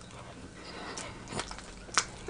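A person chewing a mouthful of food with the mouth closed, quietly, with a few sharp wet mouth clicks and smacks, the last and loudest near the end.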